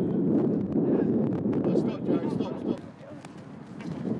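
Wind buffeting the microphone on an open pitch, with indistinct shouting voices and a few short knocks. The wind noise drops sharply about three quarters of the way through.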